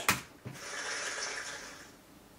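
A short click, then a soft hissing whoosh that swells and fades over about a second and a half.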